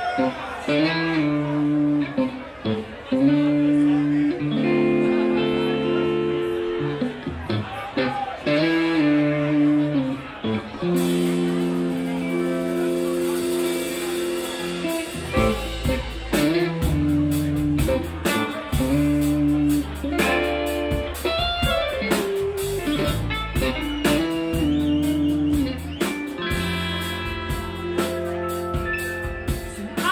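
A live band playing a song: an electric guitar opens with held, bending notes, cymbals come in about eleven seconds in, and bass and drums join in full around fifteen seconds in.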